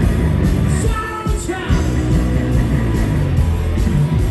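Live rock band playing loud through a venue PA: electric guitars, bass and drums, recorded from the front of the crowd.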